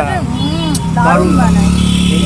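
Steady low hum of a nearby road vehicle's engine running, setting in just after the start, under people talking.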